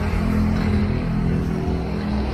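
A motor vehicle engine running at a steady pitch, a low, even hum, over general street noise.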